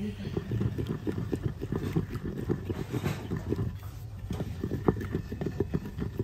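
Wooden pestle mixing and pounding yogurt into wet green chutney in a heavy stone mortar: a run of irregular dull knocks, several a second, with a short lull a little past halfway.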